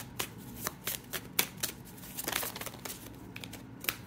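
Tarot cards being shuffled and handled by hand: a string of soft, irregular card clicks and flicks with a short papery riffle about halfway through.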